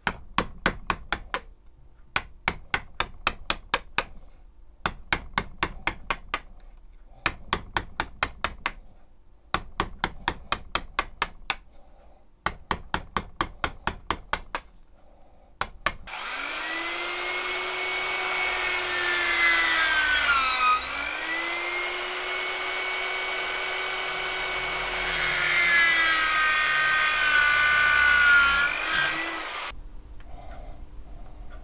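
Fine-toothed hand saw cutting a wooden handle scale clamped in a vise: quick strokes, about five a second, in short runs with brief pauses. About halfway through, an electric drill starts and bores into the wood, its whine dropping in pitch as the bit loads up, recovering, and dropping again before it stops.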